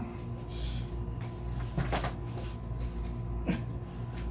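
Rummaging through a cupboard: a few scattered knocks and rustles of things being handled, the sharpest about two seconds in, over a steady low hum.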